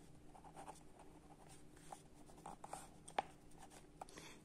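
Faint scratching of a ballpoint pen writing on lined notebook paper, in short irregular strokes, with one sharper click about three seconds in.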